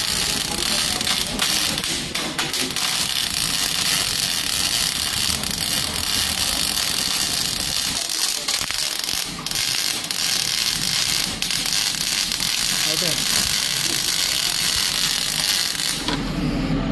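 MIG welding arc running, a steady dense crackle and sizzle with spatter, cutting off at the very end.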